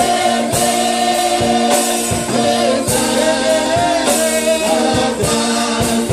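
Gospel song sung by several voices together, over a keyboard holding a steady low note, with drum kit strokes keeping time.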